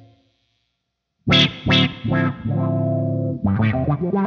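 Electric guitar played through a GFI System Rossie filter pedal, funk style. After about a second of silence, two short, sharply attacked notes sound, then a held chord, then a run of quick notes near the end.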